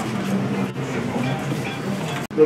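Indistinct talking of several people in a room, overlapping voices running on without a break.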